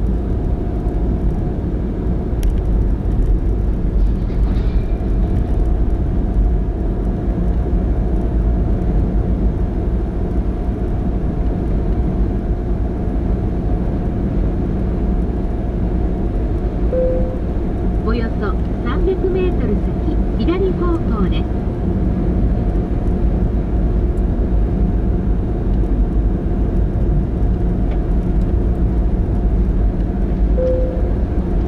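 Inside a moving car: steady low road and engine rumble with tyre noise. A short beep comes a little past halfway, followed by a brief voice.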